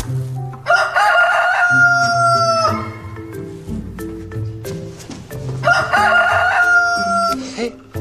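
Rooster crowing twice, two long cock-a-doodle-doo calls a few seconds apart, each sliding slightly down at its end.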